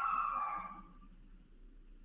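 A short electronic chime: several steady tones sounding together, fading away within about a second.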